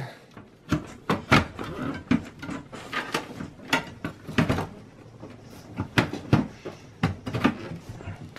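Irregular clicks and knocks of a desktop power supply unit being slid back into its bay in a steel PC case, with the case being handled.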